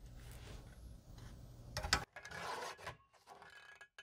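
Faint rubbing of a sheet of patterned paper being slid and lined up on a paper trimmer's base, with a few light clicks a little before halfway and a short scrape just after.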